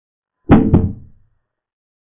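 Chess program's piece-capture sound effect as a knight takes on e7: two quick knocks about a quarter second apart, dying away within a second.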